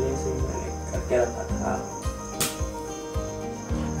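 Room background: a steady high-pitched whine over a low hum, with one sharp click about two and a half seconds in.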